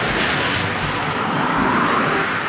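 Road traffic: cars driving along a paved road toward the microphone, a steady rush of tyre and engine noise.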